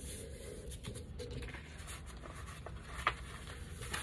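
Hands folding and sliding a sheet of 12x12 craft paper: soft paper rustling and rubbing, with a sharp tick about three seconds in.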